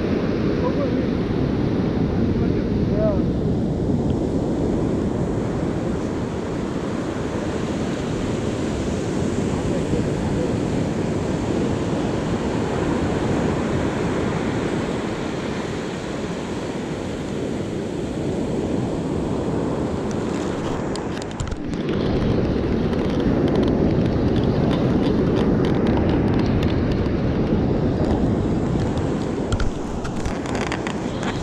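Surf breaking and washing up a sandy beach, with wind buffeting the microphone in a steady low rumble that briefly eases about two-thirds of the way through.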